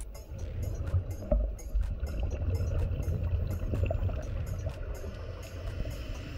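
Underwater ambience recorded by a diving camera: a steady low rumble of moving water with faint scattered clicks over it.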